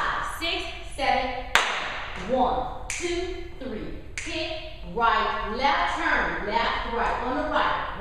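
Sneakers tapping and stomping on a hard studio floor during line-dance steps, with four sharp knocks in the first half, about a second and a half apart.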